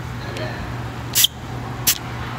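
Two short hisses of air from a car tyre's valve stem, a little over half a second apart, as air is let out to bring the pressure down to about 33 psi.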